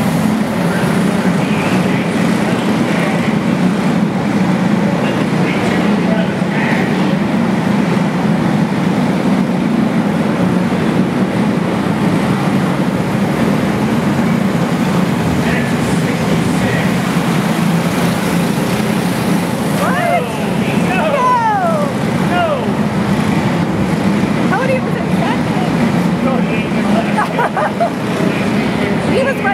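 Several racing kart engines running together on a dirt oval, a loud steady drone with a few rising and falling sweeps in pitch about two-thirds of the way through. Voices are mixed in.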